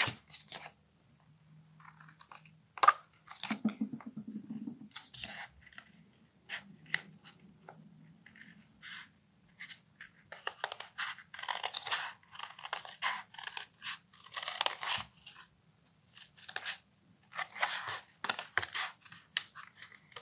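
Scissors cutting through metallized card in a run of short, irregular snips.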